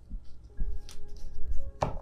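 A deck of tarot cards being handled on a table: several soft knocks and slaps of cards, the sharpest one just before the end.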